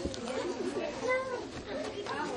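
High-pitched voices making wavering, wordless sounds, with no clear words.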